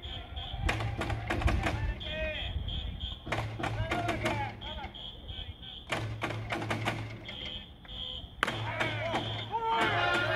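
Baseball cheering section between fight songs: an electronic whistle gives groups of short high beeps every two to three seconds, over taiko drum strikes and fans shouting.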